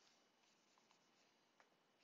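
Near silence with faint scratching strokes of a pen stylus on a graphics tablet, and one sharp tap about one and a half seconds in.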